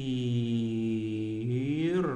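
A man's voice holding one low, steady wordless note, like a drawn-out hum or chant, for about two seconds, its pitch rising slightly near the end.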